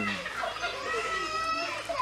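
Children's voices in the background, long high-pitched calls or shouts held for about a second at a time.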